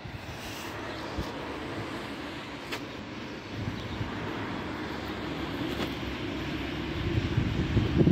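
A steady distant engine rumble that swells gradually over the second half, with wind buffeting the microphone near the end.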